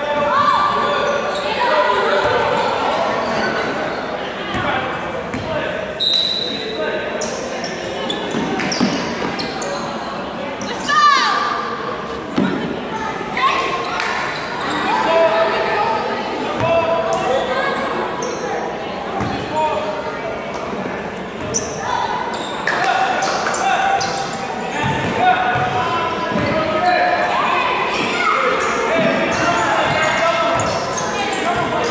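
Basketballs bouncing on a hardwood gym floor during a youth game, mixed with kids' voices calling out, all echoing in a large gymnasium.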